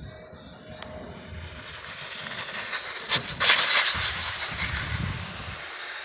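Electric RC car on a high-speed run: a rushing sound rises over the first couple of seconds, is loudest about three and a half seconds in as the car passes, then eases off a little.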